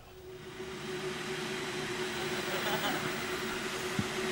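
Electric kettle heating water, a rushing hiss that grows steadily louder as it comes up to the boil, with a steady tone underneath.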